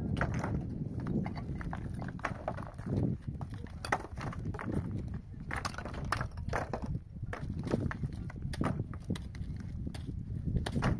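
Loose rocks clacking and knocking against one another as they are picked up, moved and set down by hand, in irregular knocks a few times a second, with a low rumble underneath.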